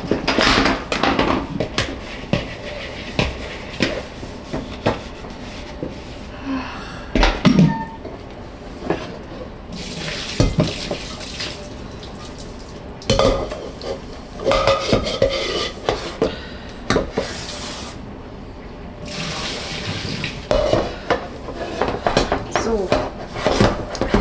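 Dishes and cutlery clinking and knocking at a kitchen sink, with stretches of running tap water.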